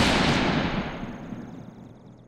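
Channel-intro sound effect over the title card: a single heavy cinematic hit that fades away slowly over about two seconds.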